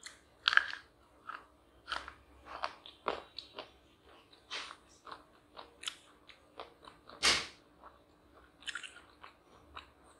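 Close-up crunching and chewing of chocolate, an irregular run of crisp crackly bites, loudest about half a second in and again about seven seconds in.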